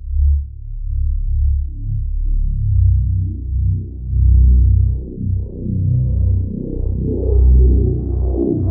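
Electronic music from the opening of a progressive psytrance track: deep synthesizer bass and pads that swell and dip. The sound grows brighter as higher tones fill in toward the end.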